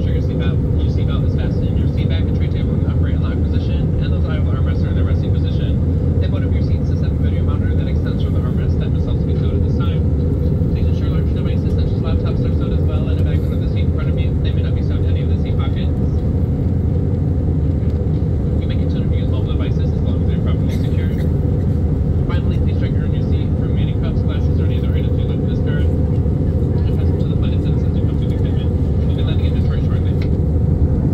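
Steady drone of an Airbus A319's cabin in flight, the engine and airflow noise heard from a window seat over the wing, with indistinct voices talking throughout.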